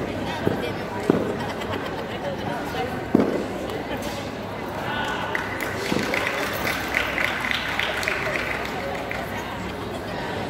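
Four sharp thumps of a wushu performer's feet stamping and hands slapping during a traditional martial arts form, over a steady murmur of crowd chatter that echoes around a large hall.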